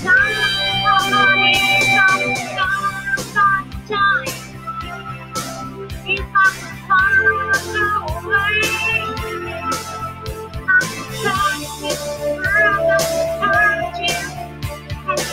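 A woman singing while strumming an acoustic guitar, over held low notes that change every few seconds.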